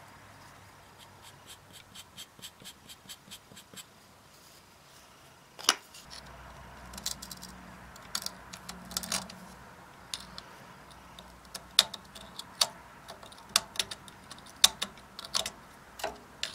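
Small metal hand tools clicking and tapping against a cast iron engine cylinder and its vise while a hole position is marked out. A run of faint, even ticks comes first, then scattered sharp clicks, the loudest about six seconds in, coming more often near the end.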